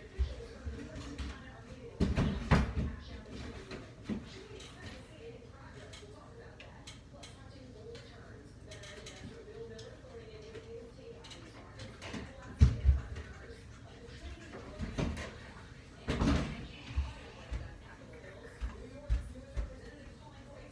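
Knocks and thumps of kitchen cupboards and drawers being opened and shut: a cluster about two seconds in, the loudest sharp knock a little past halfway, and more bumps a few seconds later.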